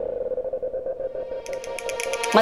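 Background music: a single sustained note with a quick flutter, joined about a second and a half in by rapid high ticking percussion.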